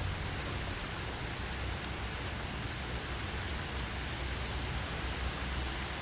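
Steady rain: an even hiss with a low rumble underneath and a few faint, scattered ticks.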